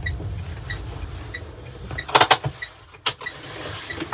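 Cabin sound of an Opel Rocks-e electric microcar moving slowly: low road rumble fades out over the first two seconds, while a turn-signal indicator ticks about every two-thirds of a second. A few loud knocks come about two seconds in, and a single sharp click follows about a second later.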